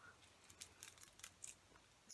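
Near silence, broken by a few faint, brief clicks.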